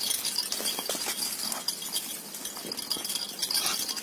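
Punganur dwarf cattle moving about close by: scattered short clicks and rattles over a steady hiss.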